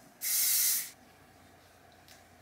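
Aerosol hair spray can giving one short hissing burst of about three-quarters of a second onto her hair, starting a moment in.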